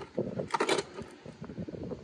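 Light handling clatter of tools and hard plastic torque-wrench cases in a toolbox drawer, with a couple of sharp knocks about half a second in.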